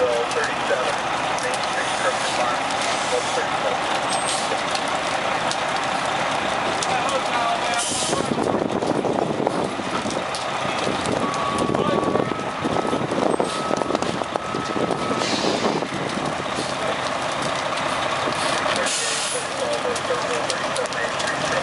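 Fire engine's diesel engine running as the truck pulls in close, with sharp hisses from its air brakes about eight seconds in and again near the end.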